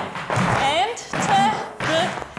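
A woman's voice calling out Irish dance steps in a sing-song rhythm, with hard shoes tapping on the floor.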